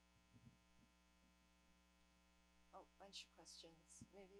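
Near silence with a steady electrical mains hum. A faint, distant voice begins near the end.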